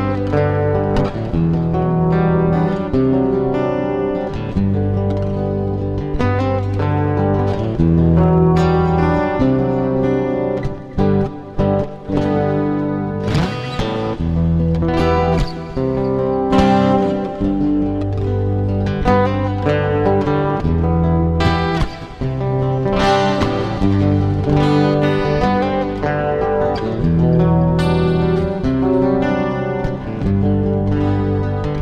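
Instrumental guitar music: plucked guitar lines over low sustained bass notes that change every second or two.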